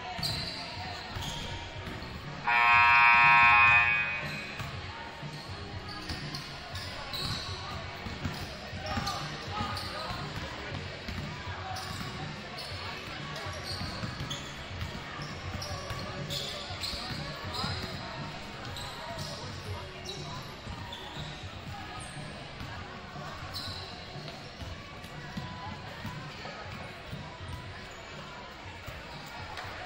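Several basketballs bouncing on a hardwood gym floor, over crowd chatter echoing in a large gym. About two and a half seconds in, a loud scoreboard horn sounds for about a second and a half.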